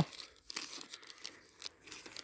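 Empty energy-gel and energy-bar wrappers crinkling faintly in a gloved hand as they are pulled out of a saddlebag, a scatter of small crackles.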